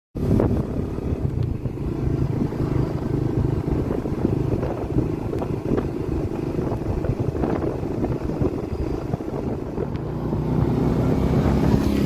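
Steady low rumble of a vehicle's engine and road noise while driving along.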